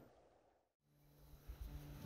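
Near silence: the sound dies away to nothing, then a faint low rumble and a soft steady hum come back up in the second half.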